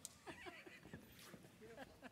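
Faint off-microphone voices and laughter, with a couple of light clicks.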